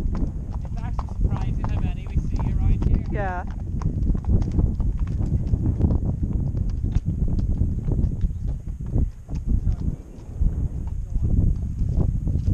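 Horses walking on a grassy, stony trail, their hooves clopping in an uneven patter over a steady low rumble. A voice sounds briefly in the first few seconds.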